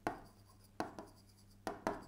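A stylus writing by hand on the glass of an interactive display: about five sharp taps in two seconds as the strokes land, each dying away quickly.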